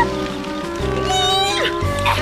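Cartoon background music with a high-pitched, squeaky character vocalisation held for about a second in the middle, dropping in pitch as it ends.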